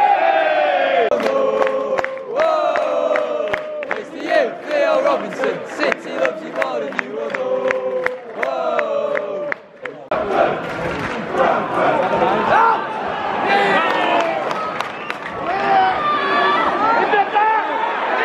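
Football supporters singing a chant together, clapping in time. About ten seconds in the sound breaks off abruptly and gives way to a mass of crowd voices shouting and calling out.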